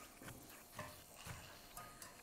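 Near silence: room tone with a few faint, soft low knocks.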